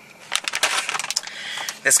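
Bag of tortilla chips crinkling as it is handled and moved, a dense run of small crackles.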